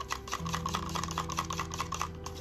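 Wooden craft stick stirring a thick acrylic paint mix in a plastic cup, clicking rapidly against the cup in a fast, even run of small knocks.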